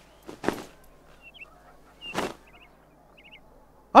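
Lengths of shop fabric swishing through the air as they are flung off the shelves: two short whooshes about a second and a half apart. Faint short bird chirps, some in quick pairs and threes, come between and after them.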